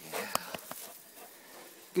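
Quiet rustling and a few soft clicks of movement in snow and dry brush, with one sharp click about a third of a second in.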